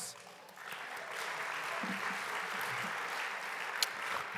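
Audience applauding, building up about half a second in and then holding steady.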